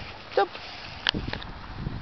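A golden retriever gives a short, sharp bark about a second in, with a second smaller yap just after, following a shouted "Stop!".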